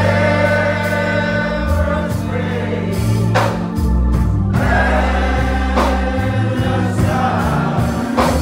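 Gospel music: a choir of voices singing over low, sustained bass notes, with a sharp strike every couple of seconds.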